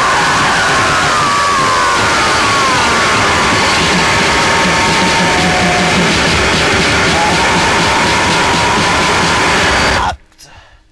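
Japanese harsh noise music: a loud, unbroken wall of distorted noise, with a whining pitch that slides downward over the first few seconds and a steadier whine later. It cuts off abruptly at the very end, where the track stops.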